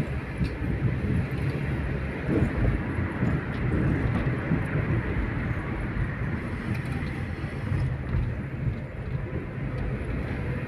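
Steady car cabin noise while driving: engine and tyre-on-road rumble heard from inside the car.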